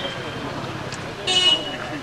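Murmur of people talking in an outdoor crowd, with a short, loud horn toot a little past the middle.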